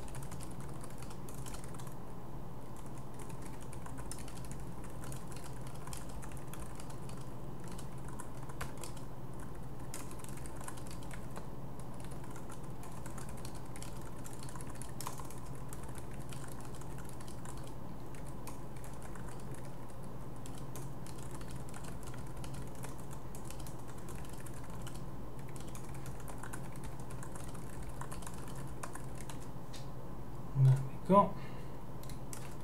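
Typing on a computer keyboard: scattered key clicks over a steady low hum.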